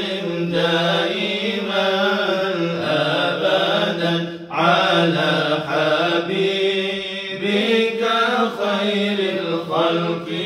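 Men's voices chanting Islamic dhikr in a slow, drawn-out melody, with a brief pause for breath about four and a half seconds in.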